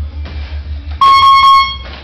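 Gym round timer sounding a loud, steady electronic buzz about a second in, lasting under a second: the signal that a round has ended.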